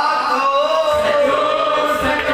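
Men's voices chanting a devotional dhuni in unison, holding a long drawn-out note that slowly drifts in pitch.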